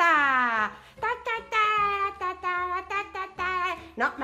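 A high-pitched, childlike voice babbling without clear words. It opens with a long falling wail, then runs on in short sing-song syllables.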